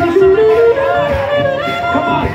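Live Moroccan band music with violin, guitar, drum kit and frame drum, its lead line climbing upward in short steps and then holding a higher note.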